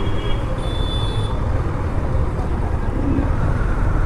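KTM Duke 390 motorcycle riding slowly in heavy traffic, heard from the rider's camera: a steady low engine and road rumble. A brief thin high-pitched tone sounds about half a second to a second in.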